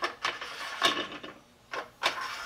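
Steel carriage bolts being slid into the slot along the underside of an aluminium elevator landing sill: several sharp metal clicks and scrapes with short quiet gaps between.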